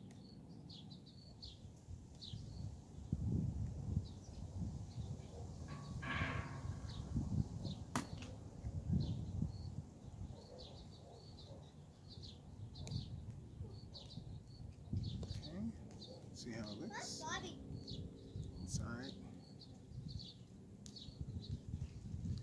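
Small birds chirping over and over, over a low rumble of wind and handling noise. There is a single sharp click about eight seconds in, and brief voice-like sounds a little past halfway.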